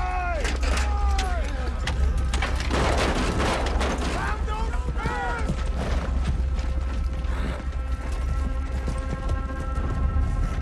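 Battle-scene soundtrack of a TV drama: soldiers' shouted cries over a steady deep rumble, a burst of clanking about three seconds in, and held musical notes coming in from about seven seconds on.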